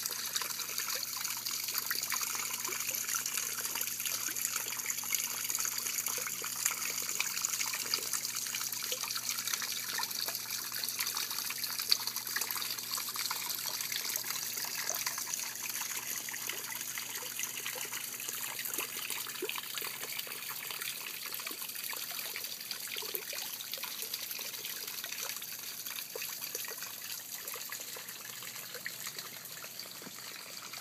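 Small rock-garden fountain trickling steadily, the sound slowly growing fainter toward the end, with a faint low hum underneath.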